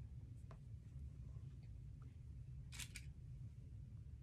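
Faint handling of straight pins and fabric while pinning a folded tote-bag corner: a soft tick about half a second in and a sharper pair of clicks near three seconds, over a low steady room hum.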